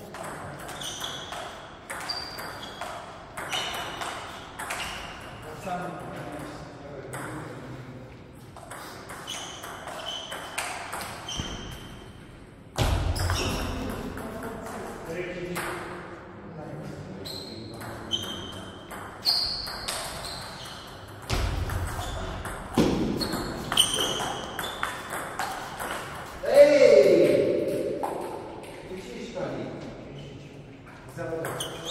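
Table tennis ball clicking off the rackets and the Donic table in quick rallies, with short ringing pings, in an echoing hall. A loud voice call with falling pitch comes near the end.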